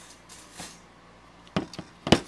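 Cuttlebug cutting plates being handled after a pass through the machine: a soft scraping rustle, then two sharp plastic clacks near the end.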